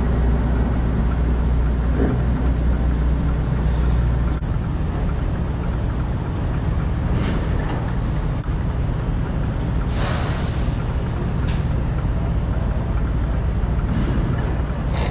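Diesel semi-truck engine running steadily with a low hum, with a few short hisses part-way through.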